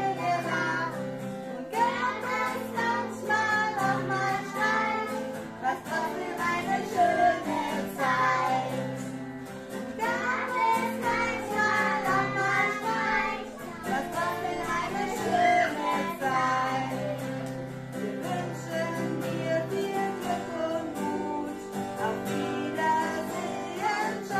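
A woman singing a German farewell song in phrases, accompanying herself on an acoustic guitar.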